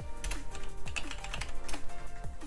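Computer keyboard typing: a quick run of key clicks as a word is typed into a search box, over quiet background music.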